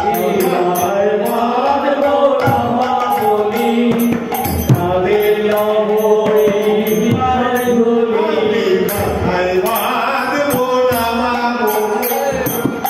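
Bengali padavali kirtan: male voices singing a devotional melody over a harmonium, with small hand cymbals (kartal) striking in a steady rhythm.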